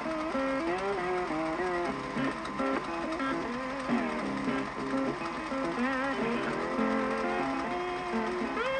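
Background music carried by a plucked guitar melody.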